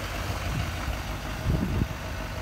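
Diesel pickup engine idling steadily, a low hum with an even beat. The source is the 6.6-litre Duramax V8 turbo-diesel of a 2020 Chevrolet Silverado 2500HD.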